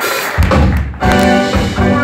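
Live jazz-funk band kicking in. A deep bass-and-drum hit lands about half a second in, then a sustained chord from keyboards and bass follows.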